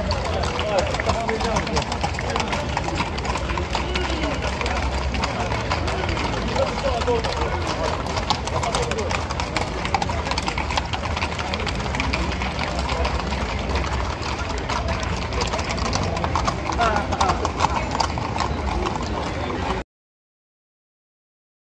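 Hooves of a group of Camargue horses clip-clopping at a walk on a paved street, with people talking close by.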